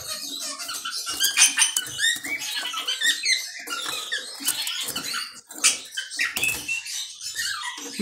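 Caged finches, a male European goldfinch and a canary, calling in quick, high chirps and twitters, irregular and overlapping, with a few light clicks.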